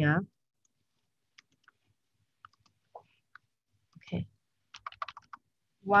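Faint, scattered computer clicks, then a quick run of keystrokes about five seconds in as a number is typed on a keyboard.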